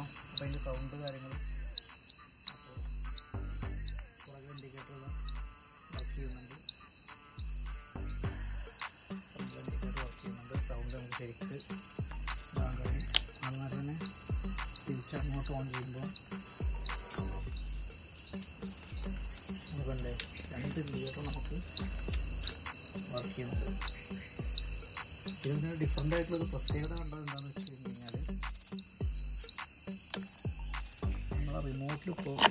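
Aftermarket universal indicator buzzer on a Revolt RV400 electric motorcycle sounding a high-pitched electronic tone that pulses regularly with the turn signal flashing.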